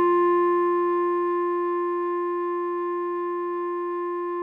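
A clarinet holds the tune's final long note, a written G that sounds as concert F, over a sustained F major chord from a keyboard. The note fades slowly, and the lower chord tones drop out near the end.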